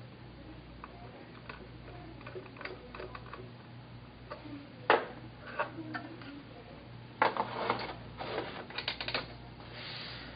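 Small screws being driven into a metal laptop drive bracket with a precision screwdriver, giving faint ticks and scrapes. A sharp knock comes about five seconds in, then a run of louder clicks and rattles between about seven and nine seconds as the SSD and its bracket are handled on the wooden desk.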